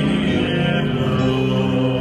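Male cantor singing a cantorial melody into a hand-held microphone, drawing out long held notes.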